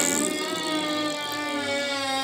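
Cartoon sound effect of a skunk spraying: it starts suddenly with a short hiss, then holds a long, steady buzzing tone.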